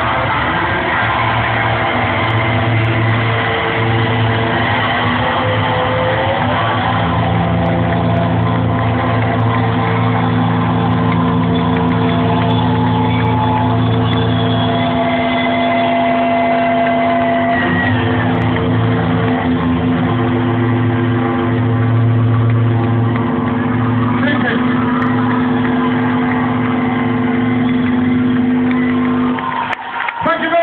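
Live rock band with distorted electric guitars and bass holding long sustained chords at full volume, recorded from within the audience. The sound breaks off abruptly near the end.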